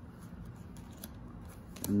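Playing cards being pushed off the top of the deck one by one from hand to hand: faint sliding of card stock with a few soft clicks.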